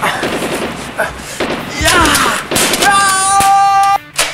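Mock battle sound: rapid gunfire over a man's shouting, ending in a long, steady high-pitched held tone or cry for about the last second.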